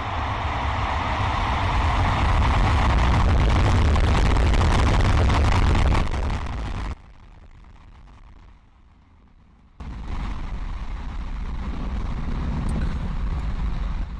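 Starship SN11's three Raptor engines firing on ascent, a loud steady roar with heavy low rumble, heard through the livestream feed. About seven seconds in the sound drops away almost entirely for about three seconds, then the roar comes back.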